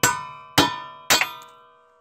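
A hammer striking metal at a Mazda Miata's wheel hub: three clanging blows about half a second apart, the last one doubled, each leaving a ringing tone that dies away.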